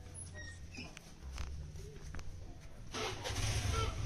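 Outdoor background noise: a steady low rumble with scattered faint clicks, growing louder about three seconds in.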